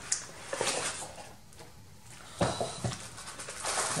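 Tissue paper rustling and a cardboard box being handled as a wrapped candle is pulled out of it, in a few short bursts with quieter pauses between.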